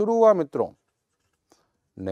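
A man's voice speaking for under a second, then silence.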